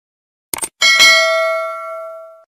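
A mouse-click sound effect, a quick double click, then a bell ding that rings on and fades away over about a second and a half: the notification-bell sound of a subscribe-button animation.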